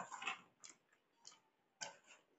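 Metal spoon clicking and scraping against a stainless steel plate while scooping pasta, a quick cluster of clicks at the start and then single clicks at irregular intervals.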